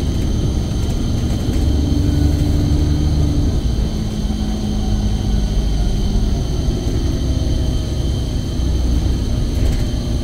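Alexander Dennis Enviro 400 double-decker bus running under hard acceleration, heard from inside the upper deck: a deep engine rumble with a steady high whine. A mid-pitched tone in the engine note drops in pitch about three and a half seconds in.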